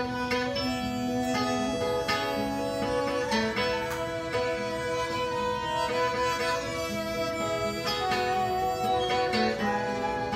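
Instrumental break of a live folk band: a fiddle plays long, bowed melody notes over a plucked acoustic guitar.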